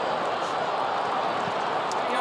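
Stadium crowd of Australian rules football spectators cheering a goal, a steady, even wash of noise with no break.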